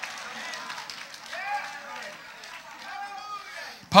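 Faint voices talking quietly in a few scattered short phrases, much softer than the preaching on either side.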